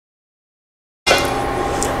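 Dead silence for about the first second, then a steady background hiss with a faint hum in the kitchen.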